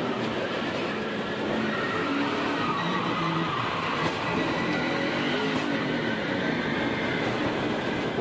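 NASCAR stock cars' V8 engines running on the race broadcast audio, a steady dense noise with faint engine pitches drifting up and down.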